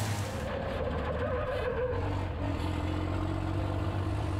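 Onboard sound of a racing truck's diesel engine running at speed, a steady low drone with wind and road noise.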